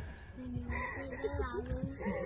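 A person's long, drawn-out cry, held at one pitch for over a second, with a wavering higher squeal in the middle.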